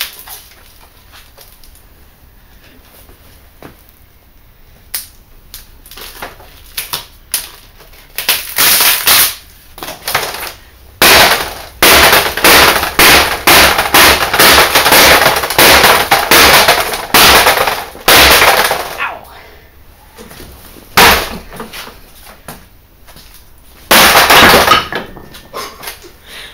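Hammer blows and stomps on a broken LCD monitor's glass panel lying on a brick floor: sharp impacts with the glass cracking and crunching. After a few quiet seconds, scattered taps lead into a rapid run of blows lasting about ten seconds, then two more hard hits near the end.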